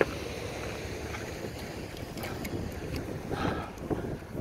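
Wind buffeting the microphone outdoors: a steady low rumble, with a few faint clicks in the middle and a louder breathy patch near the end.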